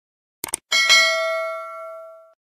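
Subscribe-button animation sound effect: two quick mouse clicks, then a notification-bell ding that rings on and slowly fades.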